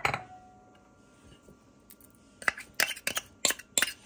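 Metal spoon clinking and tapping against a small stainless-steel bowl and a ceramic mixing bowl as dry spices and chili flakes are scraped and knocked out. There is one clink right at the start, then a quiet stretch, then a quick run of about eight sharp clinks over the last second and a half.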